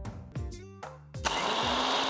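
Background music with plucked notes, then just over a second in an electric mixer grinder switches on and runs loudly, its motor tone rising as it spins up while it grinds dry spices into masala powder.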